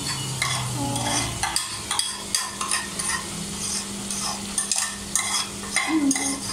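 Food frying in a wok while a wooden spatula stirs and scrapes it in quick, irregular strokes, over a steady low hum.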